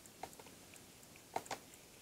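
Near-quiet room tone with a few faint, short clicks: one shortly after the start and two close together a little past the middle.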